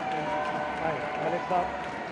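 Several people talking at once in a large hall, with a man's voice saying "aap" near the end.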